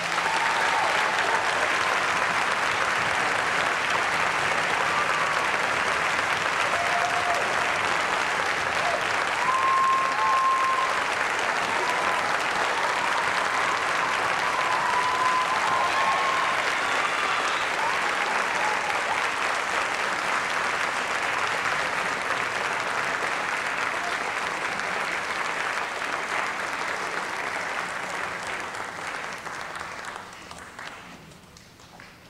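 Audience applauding steadily, with some cheering voices and whoops around the middle. The applause dies away over the last few seconds.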